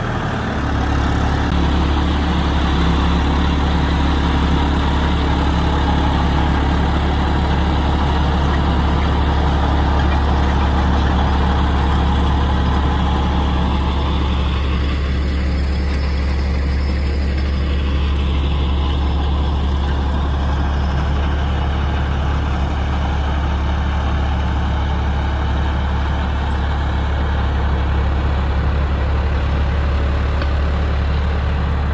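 John Deere 5405 tractor's diesel engine running steadily under load while driving a rotavator through the soil, a constant low drone. The sound grows thinner for a few seconds around the middle, then fills out again.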